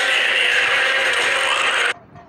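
A dense, noisy, mechanical-sounding sound effect from the teaser's sound design that cuts off suddenly near the end.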